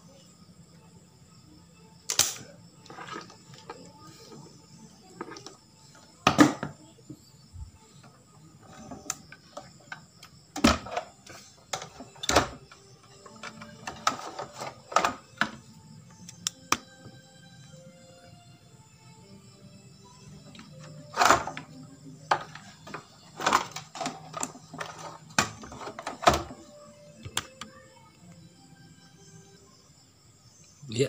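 Irregular sharp clicks and knocks of tools working on a CRT television's circuit board as an old electrolytic capacitor is taken out, spaced a few seconds apart over a faint steady hum.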